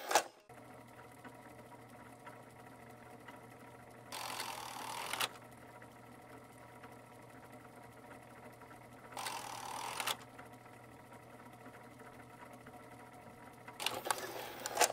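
Faint steady mechanical whirring and hum, like a running machine. Two bursts of noise, each about a second long, break in about four and nine seconds in, with more bursts at the start and the end.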